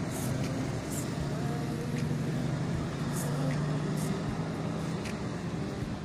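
A steady low hum, like distant traffic or running machinery, with light footsteps on paving about once a second.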